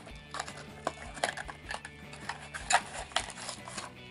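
Handling of a small cardboard toy box and a foil-wrapped packet: irregular crinkles, taps and rustles, the sharpest about three quarters of the way through, over soft background music.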